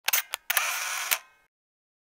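Camera shutter sound effect: two quick clicks, then a longer shutter-and-wind sound that starts and ends with a click, all within about the first second and a half.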